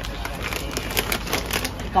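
Plastic snack packets crinkling and rustling as they are handled on a store shelf, a quick irregular run of small crackles.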